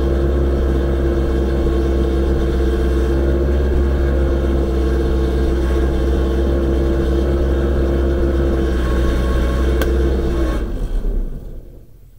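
Genie S-40 boom lift's engine running steadily, with a steady whine on top. The sound dies away about ten and a half seconds in as the machine is shut off.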